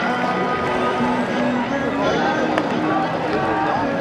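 A baseball supporters' section chanting a cheer in unison, with trumpets holding long notes over the massed voices.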